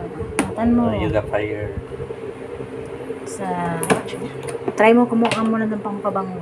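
A few sharp clicks of scissors snipping packaging and a cardboard box being handled, the loudest about four seconds in, among people's voices.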